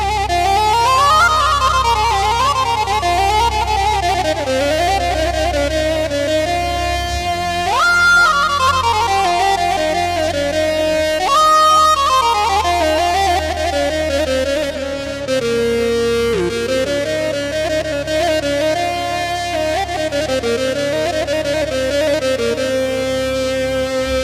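Greek instrumental music on bouzouki with added keyboards: a winding lead melody of held notes and fast runs, with two quick upward slides, over a steady low accompaniment.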